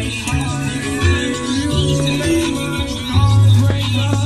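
Music playing through a Panasonic shelf stereo system's speakers, with a steady low bass line; the stereo is working again after its chewed wiring was spliced.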